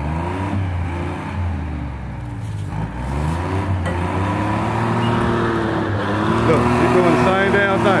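Timberjack 225 cable skidder's diesel engine running under load, its pitch rising and falling as it is revved, louder in the last couple of seconds.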